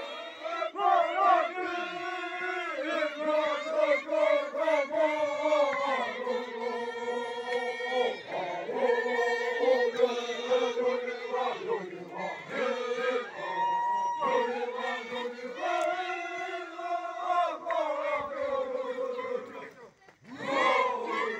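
A group of Kayapó men chanting together in unison, holding long notes that slide in pitch and pausing briefly every few seconds between phrases.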